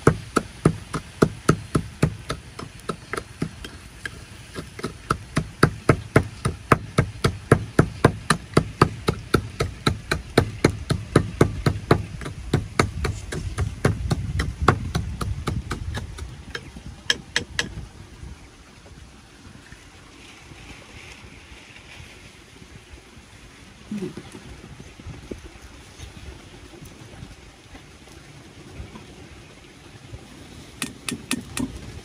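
Pestle pounding salt and chili in a small ceramic bowl: quick, even knocks about four a second, stopping a little over halfway through.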